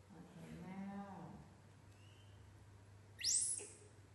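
A baby macaque's brief, very loud shrill squeal, rising steeply in pitch, about three seconds in. Before it, in the first second and a half, comes a drawn-out, lower-pitched vocal sound.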